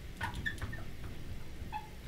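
Marker squeaking and scratching in short strokes on a glass lightboard as a word is written, a few faint squeaks in the first half and once more near the end.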